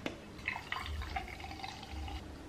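A canned RIO cocktail being poured into a glass, the liquid splashing and trickling softly as the glass fills.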